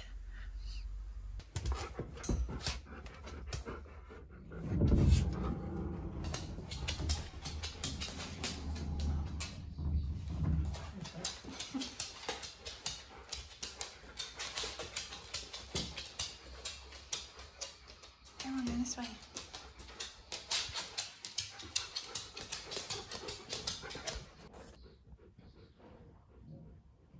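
A husky-malamute dog vocalising in a low, talking-style grumble that is loudest about five seconds in, then panting and moving about with many small clicks and rustles, and a short whine near the end.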